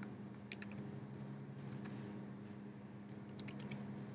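Computer keyboard keys tapped in short irregular runs as a short shell command is typed, over a faint steady low hum.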